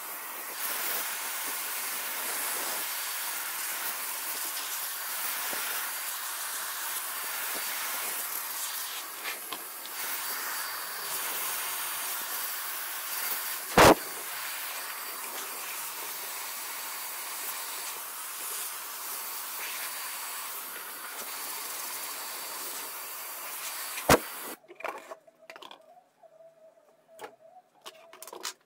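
Handheld vacuum cleaner with a crevice nozzle running steadily, an airy hiss as it is worked over a motherboard, with one sharp knock about halfway through. The vacuum stops a few seconds before the end, leaving a few light clicks.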